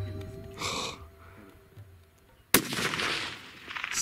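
A single rifle shot about two and a half seconds in: one sharp, loud crack echoing for under a second, fired at an axis deer buck a few hundred yards off. Background music fades out before it.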